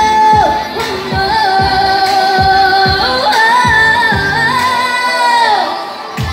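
A woman singing long held notes over a pop backing track with a steady kick-drum beat; one note is held, steps up in pitch about three seconds in, and falls away near the end.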